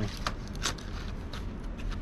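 Hands rummaging through a wooden art supply case of coloured pencils and markers: scattered light clicks and rustles, over a steady low hum.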